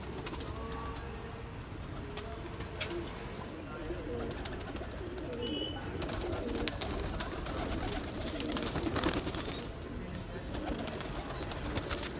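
Domestic pigeons cooing, a low wavering murmur, with scattered clicks.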